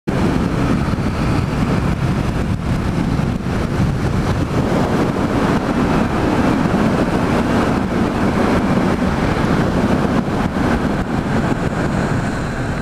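Yamaha MT-07 motorcycle riding at road speed, heard from the bike: its 689 cc parallel-twin engine's low, steady drone mixed with wind and road rush on the camera microphone, holding an even level throughout.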